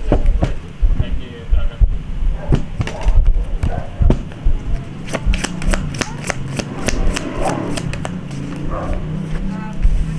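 A deck of oracle cards being shuffled by hand, the cards flicking and slapping against each other in quick runs of sharp clicks, densest in the middle of the stretch.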